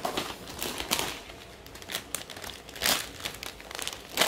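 Plastic snack bag and paper packing crinkling as they are handled and pulled out of a cardboard box. The crinkling comes in irregular bursts, loudest about a second in and again near three seconds.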